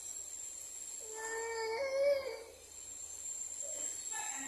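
A toddler's voice: one drawn-out cry, about a second long, that steps up in pitch near its end.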